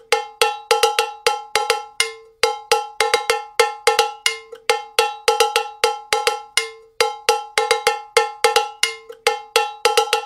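Cowbell sample played solo in a quick, syncopated repeating pattern. Each hit is a sharp metallic clank with a short ringing decay.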